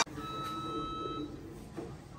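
An electronic beep: one steady, even tone lasting about a second.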